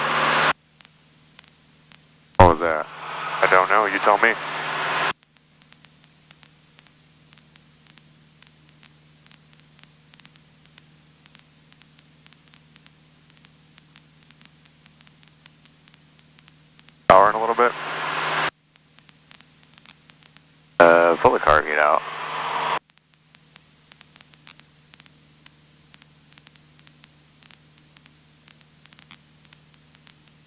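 Cockpit headset intercom audio: three short bursts of radio-like speech, each cutting in and out abruptly, over a steady low hum and faint static hiss.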